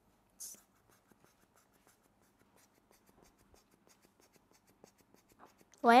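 A short puff of air hissing out of a squeeze-bulb blow-pen airbrush as the rubber bulb is squeezed, spraying marker ink onto paper about half a second in. Faint light clicks and taps of the plastic pen being handled follow.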